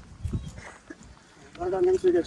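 Faint voices, then a man's held, drawn-out vowel sound starting about one and a half seconds in.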